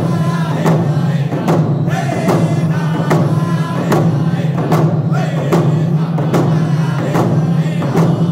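Group of men singing a round dance song in unison while beating hide hand drums with drumsticks, the strokes in a steady beat a little faster than one a second.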